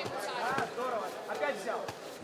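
Raised voices shouting in the hall, quieter than the commentary, with a couple of faint thuds.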